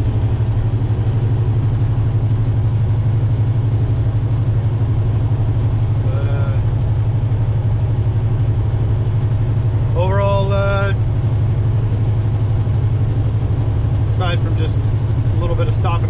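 Semi truck's diesel engine and road noise droning steadily inside the cab at highway cruising speed. A short voice sound comes about ten seconds in, and speech starts near the end.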